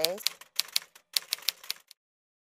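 Typewriter keystroke sound effect: a quick run of sharp clacks, about six or seven a second, with a short break about halfway, stopping just before the end.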